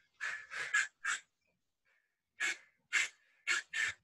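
A person's short, sharp breaths out, eight in all in two quick sets of four, of the kind forced out with each punch in cardio kickboxing.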